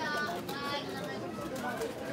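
Voices of people talking nearby in a busy street, indistinct background chatter with no single voice to the fore.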